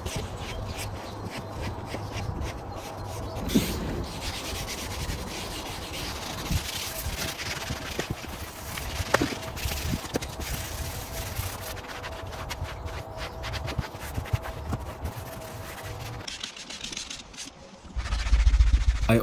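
A hand-held scrub pad scrubbing interior cleaner into Alcantara suede upholstery and carpet, a continuous scratchy rubbing made of quick back-and-forth strokes. It thins out near the end.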